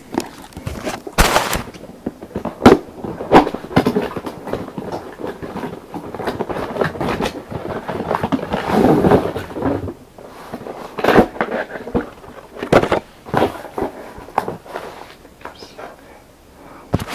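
A cardboard toy box being opened and its contents handled: irregular knocks, taps and scrapes of cardboard and plastic, with a longer stretch of scraping about nine seconds in.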